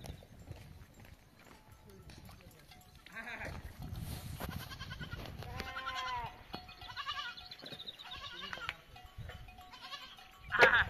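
Livestock bleating: several separate calls through the second half, the longest a little under a second, around six seconds in. A low rumble runs underneath.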